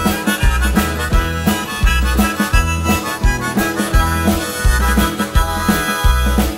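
Instrumental break in a folk song: a harmonica plays the melody over the band, with a steady drum beat underneath.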